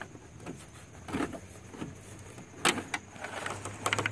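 Scattered light plastic clicks and knocks as an E36 BMW radiator is worked free of its mounts and lifted out of the engine bay by hand, with one sharper knock nearly three seconds in.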